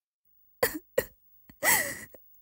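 A person coughing: two short coughs, then a longer, voiced cough near the end.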